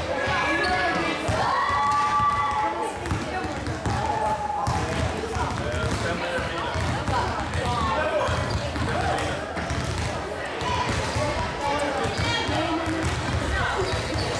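Several basketballs being dribbled and bounced on a sports hall floor, a continual irregular patter of thuds, with many voices of children talking over it.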